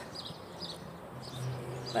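Small birds chirping in short, scattered calls outdoors. A low steady hum comes in a little past halfway.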